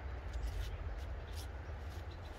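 Steady low rumble of wind on the microphone, with a few faint brief rustles from a cabbage leaf being handled.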